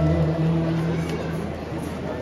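A live band's music ends on a held low chord that fades out within about the first second, leaving a quieter lull of crowd noise.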